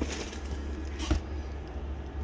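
A large cardboard box's lid being slid off, a rubbing rustle of cardboard and plastic-bagged bricks that ends with a knock a little over a second in.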